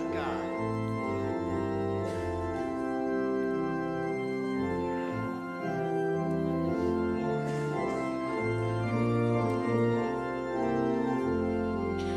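Organ playing sustained chords that change every second or two: the introduction to a hymn before the congregation starts singing.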